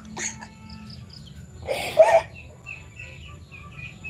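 Small birds chirping repeatedly with short, high chirps in the background. A short burst of laughter, the loudest sound, comes about halfway through.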